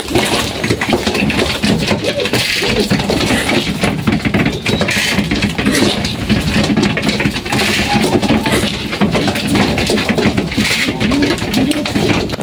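A crowd of young racing pigeons scrambling together with their wings flapping and beating against one another, a dense, unbroken flurry of wing claps and rustling as they jostle at a grain feeder.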